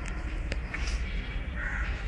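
A bird calling once, briefly and harshly, near the end, over a steady low rumble.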